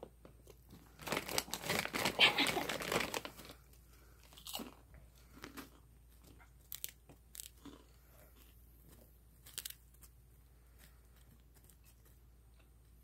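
A loud stretch of crunching and crackling for about two and a half seconds starting about a second in, then scattered soft crunches and clicks: a kitten biting and mouthing a Cheeto.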